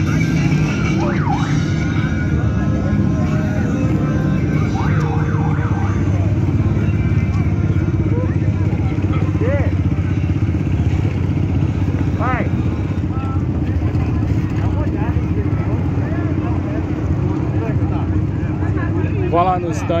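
Motorcycle and car engines running steadily at low revs in slow street traffic, a constant low drone, with scattered voices over it.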